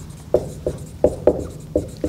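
Dry-erase marker writing on a whiteboard: five or six short squeaking strokes as a word is written.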